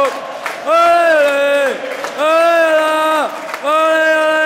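Football crowd chanting, led by one man's voice close by singing three long held notes, each about a second long.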